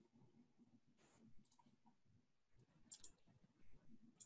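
Near silence: faint room tone with a few faint clicks, about one and a half seconds in and again about three seconds in.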